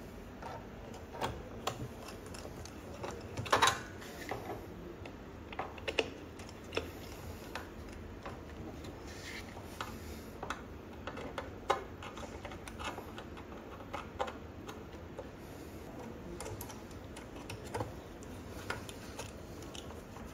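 Irregular light clicks and taps of small screws and a hex screwdriver being handled against the 3D printer's housing as its bottom cover is refitted, the loudest cluster about three and a half seconds in.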